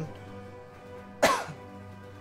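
Soft background music with steady held tones. About a second in, a man gives a single short cough over it.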